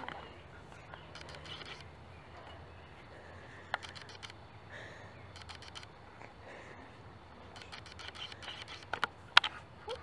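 Faint intermittent crackling of a small paper-and-twig fire in a portable grill, with a few sharp clicks, over a quiet outdoor background.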